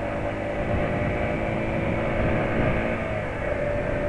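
Yamaha XTZ 125 motorcycle's single-cylinder engine running steadily while riding on the highway, with wind and road noise on the onboard microphone.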